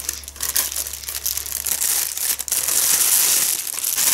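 Thin plastic packaging bag crinkling and rustling as it is handled and opened by hand, a dense crackle of many small clicks.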